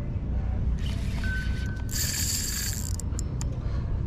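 Spinning reel ratcheting as line is worked against a hooked bluefish, with a brief sharper, hissier burst about halfway through. A steady low rumble runs underneath.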